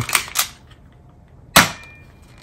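Manually cocked Tokyo Marui Glock 17 airsoft pistol: two quick clicks as the slide is racked back and let go, then one sharp shot about a second and a half in, followed by a brief faint ring.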